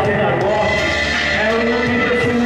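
A man's voice amplified through a handheld microphone and PA, with music underneath.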